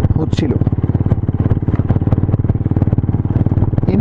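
Motorcycle engine and aftermarket exhaust running at steady cruising speed, a rapid, even train of exhaust pulses.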